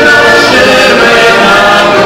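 A heligonka, the Czech diatonic button accordion, playing with a man singing along into the microphone.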